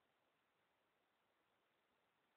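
Near silence: faint steady background hiss.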